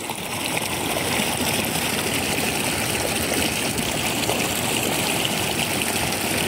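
Steady rush of flowing floodwater, still running strongly after heavy rain.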